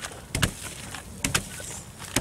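Lumps of clay-and-soil seed-ball mix slapped down onto a plastic-sheeted table as the mass is beaten to make it plastic: a thud about half a second in and two more close together a little past the middle.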